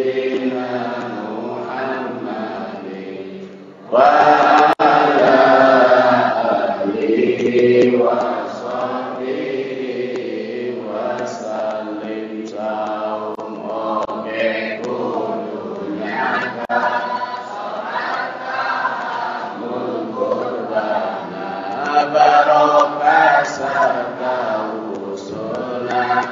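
Group of voices chanting together in an Islamic devotional chant over a hall's sound system. The chant dips briefly, then comes back louder about four seconds in.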